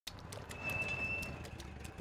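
Cartoon sound effects: a run of light, sharp clicks, about four a second, with a thin high steady tone for under a second in the middle.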